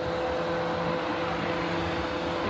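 Steady mechanical hum with a constant mid-pitched tone over an even background rush.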